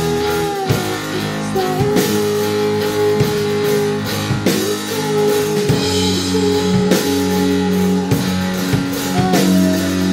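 A live rock band playing a song: electric guitar, electric bass and drum kit, with a steady beat.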